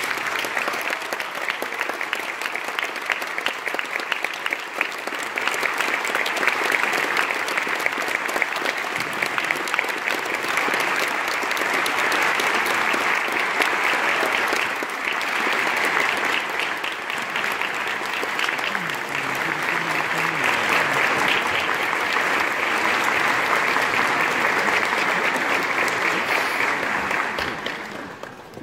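Audience applauding after a concert band performance, breaking out at once as the final chord ends and holding steady before dying away near the end.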